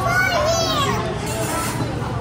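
A young child's high-pitched voice: a short call without clear words that rises and falls in pitch within the first second, over a steady low background hum.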